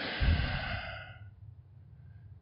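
A man's long breath out, a sigh into the microphone, fading away over about a second.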